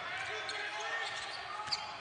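Basketball game ambience from a TV broadcast: the steady background noise of the gym during play, with faint distant voices.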